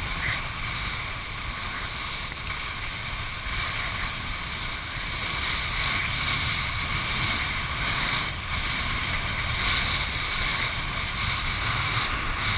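Wind buffeting a head-mounted camera's microphone, mixed with the rush of water under a kiteboard riding at speed; a steady, unbroken noise.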